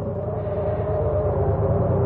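Radio-drama sound effect of a car engine running slowly and steadily, struggling along with its wiring soaked. Two steady held tones sound above the engine.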